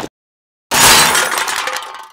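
An edited-in crash sound effect, like glass shattering: it starts suddenly out of dead silence and fades out over about a second.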